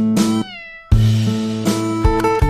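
Acoustic guitar background music. About half a second in, the music breaks off for a short call that falls in pitch, then it starts again.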